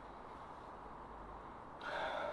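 A person sniffing a glass of dark lager held to the nose, nosing its aroma: a short breathy inhale near the end over faint steady background hiss.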